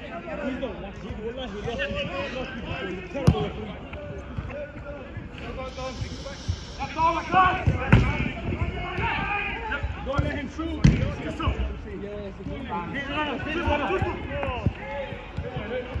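Five-a-side football on artificial turf: sharp thuds of the ball being struck, loudest about three, eight and eleven seconds in, amid players' shouts.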